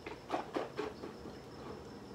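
People sipping and swallowing from glasses: a few short, soft mouth and swallowing sounds in the first second or so, then quiet room.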